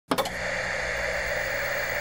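Steady hiss of TV-style static, a glitch sound effect for a video intro, starting with a couple of sharp clicks.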